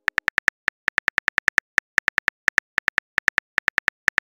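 Rapid keyboard typing clicks from a texting app, about ten short clicks a second in runs broken by brief pauses, as a message is typed letter by letter.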